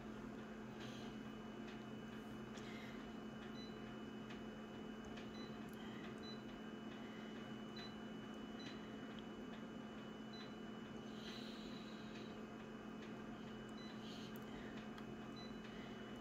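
Office photocopier idling with a faint steady hum, while its touchscreen control panel gives short soft beeps and light taps as menu buttons are pressed, at irregular intervals.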